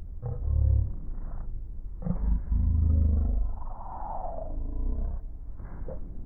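Muffled, booming sound of a meeting hall, most likely a voice over the loudspeakers, in uneven bursts with a deep rumble underneath.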